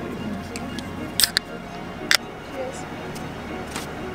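Aluminium beer cans being cracked open: sharp pull-tab cracks with a short fizz, two close together a little past a second in and another at about two seconds.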